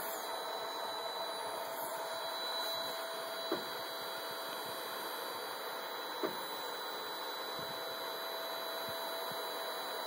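MakerBot Replicator 5th generation 3D printer running through its start-up routine: a steady hum with a thin steady whine from its fan and motors. Two short taps sound about a third and about two-thirds of the way through.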